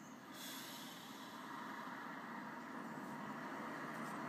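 Steady road-vehicle noise heard from inside a parked car, growing gradually louder, with a hiss that comes in about half a second in.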